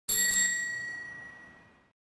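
A single bicycle-bell ding with a clear high ring that fades away over about two seconds.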